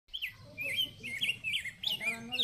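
A small bird chirping: a quick run of short, wavering high chirps, several a second.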